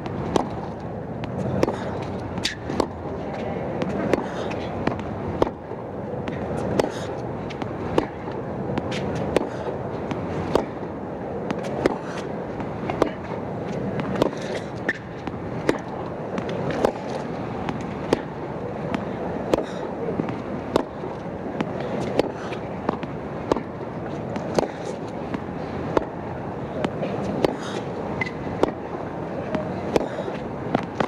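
Tennis ball struck back and forth in a long baseline rally: a sharp hit about every second and a quarter, over a steady crowd murmur.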